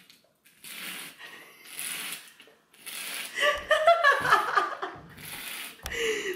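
A man drawing hard through a drinking straw with his nose, several long breathy sucks, followed from about three seconds in by laughter.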